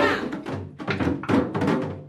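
A group of djembes and other rope-tuned hand drums beaten by hand together, several strikes a second in a loose, overlapping rhythm.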